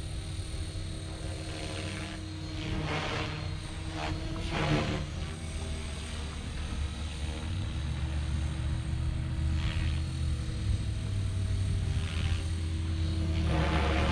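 Electric RC helicopter, a Blade Fusion 480 stretched to 550 size, flying at a distance: a steady rotor and motor drone with several swells of blade noise, the strongest about three and five seconds in and again near the end.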